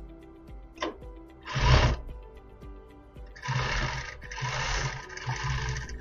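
Industrial lockstitch sewing machine stitching through the thick folded edge of a crochet blanket in short runs: one brief burst about a second and a half in, then three longer runs close together in the second half, each stopping and starting.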